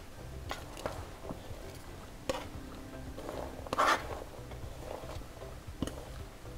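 Chopped cabbage being scraped with a spatula off a plastic cutting board into a large steel pot: light scrapes and a few sharp clicks, with a louder rustling slide of the leaves about four seconds in.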